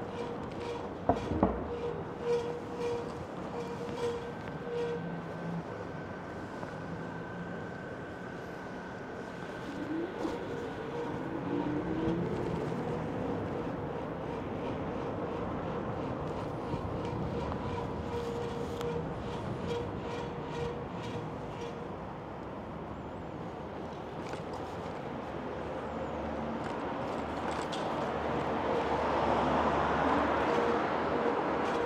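Street and ride noise from an electric bike moving along a city street under an elevated railway. A steady whine is held through most of it, with a few sharp knocks about a second in, and the noise swells near the end.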